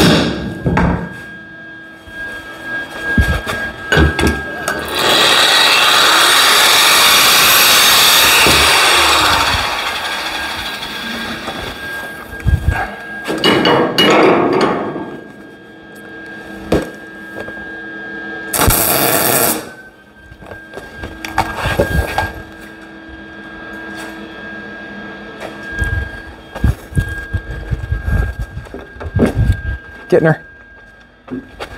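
Hammer blows on a length of 3/4-inch square steel tubing being formed by hand. These are followed by bursts of MIG welding crackle as the tubing is welded on: the longest lasts about four seconds, and two shorter ones come later.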